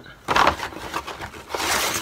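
Paper rustling and crinkling as a hand rummages in a kraft paper bag and pulls a paper envelope out of it, loudest near the end.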